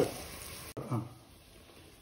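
Sliced onions frying in oil in a pot, a soft steady sizzle that cuts off suddenly about three-quarters of a second in, leaving quiet room tone.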